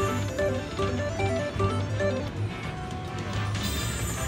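Video slot machine's game music as the reels spin and a small win pays: a run of quick, bright melodic notes in the first two seconds over a steady backing tune.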